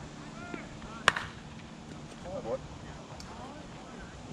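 A softball bat hitting the pitched ball once about a second in: a single sharp crack with a short ring. Scattered voices of players around the field.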